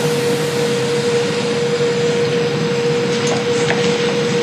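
Steady room noise in a lecture room: an even hiss with a steady mid-pitched hum, and a couple of faint ticks late on.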